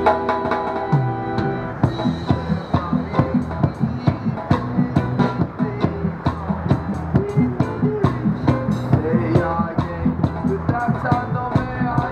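Live reggae instrumental on keyboard and hand-played drums: a held keyboard chord gives way about two seconds in to a steady beat of drumstick strikes, with keyboard and bass notes over it.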